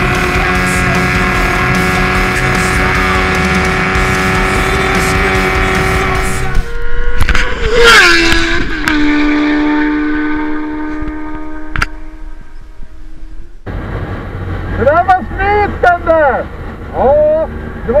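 Sport motorcycle at full speed, the speedometer near 290 km/h: engine held at steady high revs under heavy wind rush. About seven seconds in the sound breaks off with a loud, falling-pitched sweep.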